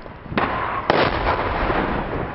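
Barrel bomb explosion: two sharp blasts about half a second apart, the second louder, followed by a long rolling rumble.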